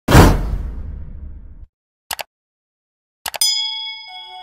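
Subscribe-animation sound effects: a heavy impact with a long fading low rumble, then two quick clicks about two seconds in. Near the end come two more clicks and a ringing notification-bell ding.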